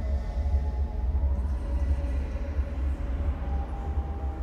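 A deep, steady low rumble with faint held tones above it.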